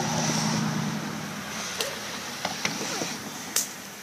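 A low, steady motor-vehicle engine hum that fades out about a second and a half in, followed by a few sharp clicks.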